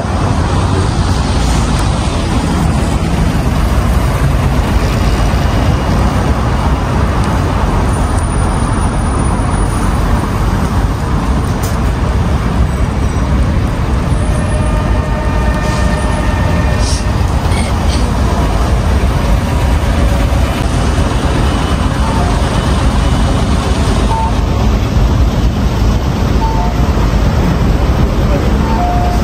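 Steady city street traffic: cars and buses running along a multi-lane road, a continuous low rumble with a few faint tones in the middle.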